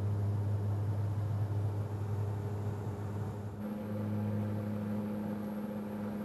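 A small propeller aircraft's engines droning steadily, heard from inside the cabin. About three and a half seconds in, the drone changes to a fuller note with a higher hum added.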